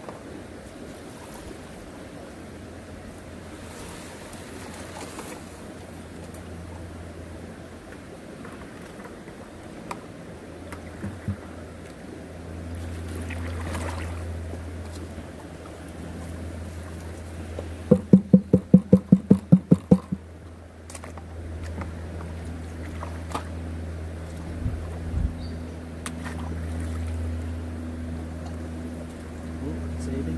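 Small water pump feeding a gold highbanker, running steadily with a low hum over the rush of water through the sluice. About two thirds of the way through, a quick run of about ten sharp knocks lasting two seconds stands out above it.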